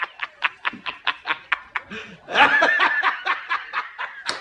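A person's rapid, breathy snickering laugh, about five short pulses a second, with a louder burst of voiced laughter a little past the middle.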